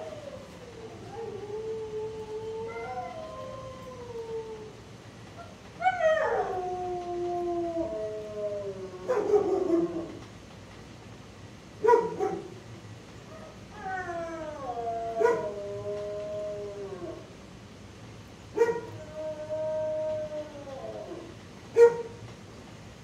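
Shelter dogs howling: long calls that slide down in pitch, overlapping at times, with a sharp bark or yip at the start of a new howl every few seconds.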